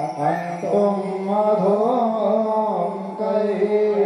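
Hindu devotional aarti hymn being sung as a continuous melodic chant, the voice wavering up and down in pitch.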